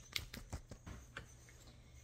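A whisk beating a runny egg-and-water lemon filling mix in a bowl, with irregular light clicks as the wires hit the container, busiest in the first second.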